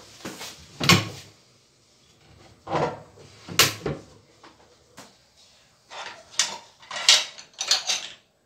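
Irregular short clatters and scrapes of things being handled, each well under a second long. The loudest come about a second in, around three and a half seconds in and around seven seconds in.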